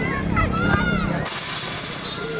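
Shouting voices of futsal players and onlookers over a steady low hum. A little after a second in, the sound cuts off abruptly to a hissy background with fainter voices.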